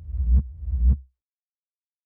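Two deep, distorted bass thumps about half a second apart, from the closing bars of an industrial hip-hop beat, cutting off about a second in.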